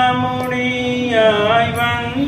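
A man chanting a Jain devotional hymn solo, holding one long note, then sliding down and back up onto a new, slightly higher note near the end.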